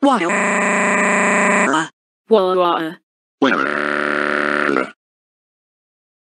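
Cartoon characters' synthesized text-to-speech voices crying in turn: a long, flat, drawn-out wail, a short wavering sob, then another long flat wail.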